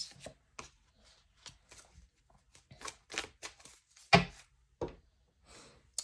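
Hands shuffling and handling a tarot deck: irregular soft card flicks and clicks, with one sharper knock about four seconds in.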